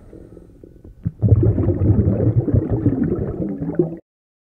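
Exhaust bubbles from a commercial diver's helmet, heard underwater as a low bubbling rumble. It is faint for the first second, then loud from just after a second in, and stops abruptly at the end.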